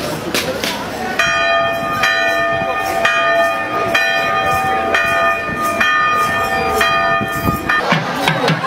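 A large temple bell rung at a steady pace of about one stroke a second, each stroke renewing a long ringing tone. It starts about a second in and cuts off suddenly near the end, with crowd noise beneath it.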